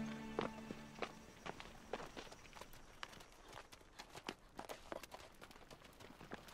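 Two horses walking, their hooves clopping irregularly and quietly on stony ground. A held music chord fades out about a second in.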